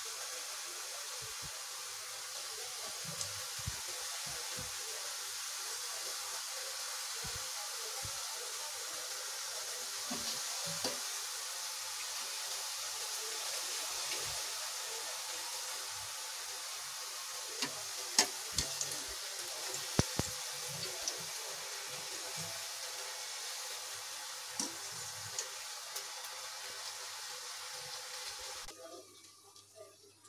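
Fafda strips of gram-flour dough deep-frying in hot oil in a steel kadai, a steady sizzle. A few sharp metal clicks come about two-thirds of the way through as tongs turn the strips against the pan, and the sizzle cuts off near the end.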